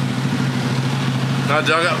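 An engine idling close by, a steady low hum that holds even throughout, with a man's voice coming in near the end.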